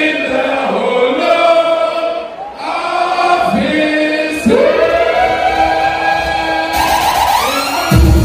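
Unaccompanied singing: voices holding long notes that bend and slide in pitch, with no drums or bass. Near the end comes a run of quick rising slides.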